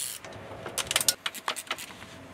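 A 12 mm ratcheting wrench clicking in a quick, uneven run as it backs out a distributor retaining bolt, with light metallic clinks and a short knock at the start.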